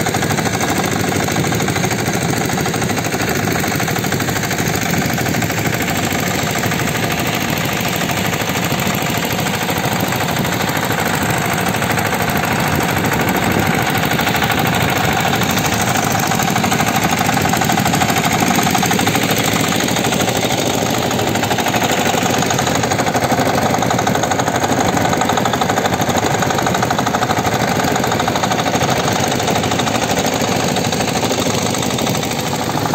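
Two open, deck-mounted engines of a jukung outrigger fishing boat running steadily under way, a fast, even knocking that keeps one speed.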